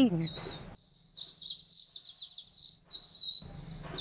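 Small birds chirping in quick, high-pitched runs that break off briefly about three seconds in, then start again.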